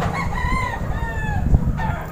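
A rooster crowing once, a single call of a little over a second, over a low rumble of handling noise, with a bump about a second and a half in.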